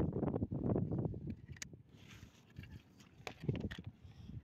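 Wind buffeting the microphone as a low rumble, strong for about the first second and then dying down. A few faint clicks follow.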